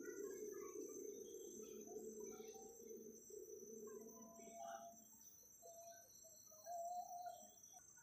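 Faint forest ambience at dusk: a steady, high-pitched chorus of insects trilling, with scattered short faint calls and one slightly louder call about seven seconds in.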